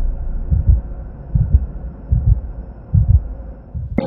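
Heartbeat sound effect: four low double thumps, a little under a second apart, over a low drone.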